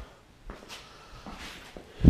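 A few faint footsteps and soft knocks on a concrete floor, four or so short clicks spread across two seconds.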